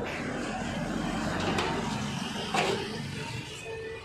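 Steady road traffic noise with a few short sharp knocks from the crumpled steel rolling shutter being pulled and handled, the loudest about two and a half seconds in.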